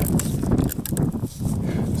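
Hands stretching and rubbing a latex condom over a Glock 17 pistol: rustling handling noise with scattered small clicks, over low wind rumble on the microphone.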